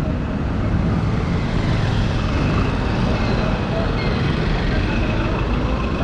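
Motorcycle riding through city traffic: steady engine and road noise with wind on the mic, and a bus running close alongside near the end.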